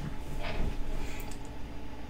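Quiet room tone with a steady low hum, broken about half a second in by a brief soft rustle and then a few faint ticks.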